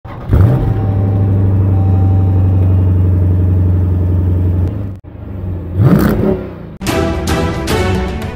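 Car engine revving up and then holding a steady high-revving drone. It cuts off about five seconds in, revs up again briefly, and music with a steady beat starts near the end.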